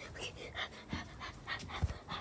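Quick, rapid panting breaths, several a second, with a couple of soft bumps from handling.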